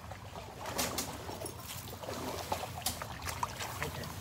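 Light splashing and trickling of shallow swamp water, with a scatter of small irregular splashes and clicks.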